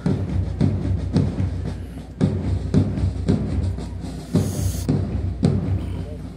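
Marching band music with a bass drum beating march time, about two even beats a second.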